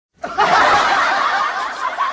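Several people laughing, starting abruptly just after a short silence.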